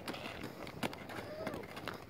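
Footsteps on a paved road, a few irregular light knocks and scuffs, with a brief faint child's voice about one and a half seconds in.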